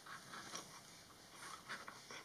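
Faint, scattered light wooden clicks and taps from a wooden automaton's crank mechanism as its handle is turned slowly and the cam drives the follower to kick a leg up.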